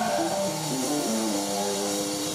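Live band music led by an electric guitar picking a melodic line, with a bent note near the start and notes stepping down, over a light backing and with little drumming.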